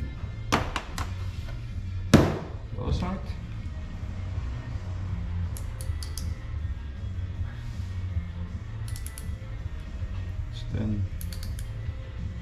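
A digital micrometer and a small steel crank part being handled on a metal workbench: a few sharp metal clicks, then a loud knock about two seconds in, with lighter clicks later as the micrometer is set on the part. Background music plays throughout.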